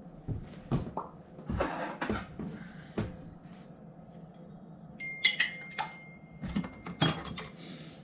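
Glass beer bottle being handled and opened: a few clicks and short rushes of noise, then sharp clinks of glass about five seconds in, one leaving a clear ringing tone for about two seconds.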